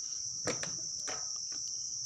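A Panasonic IH rice cooker's lid-release button is pressed and the lid springs open with a click about half a second in, followed by a few lighter clicks and knocks from the lid and hinge. A steady high-pitched whine runs underneath.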